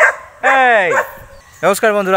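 A loud voice-like call lasting about half a second, its pitch falling steeply, comes just under a second after a short sharp vocal burst. A man starts speaking near the end.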